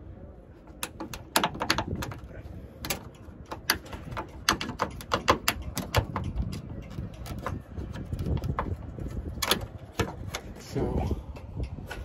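Sharp, irregular clicks and snaps as a Honda Civic hatchback's roof rain gutter trim is pried up out of its channel, over a low background rumble.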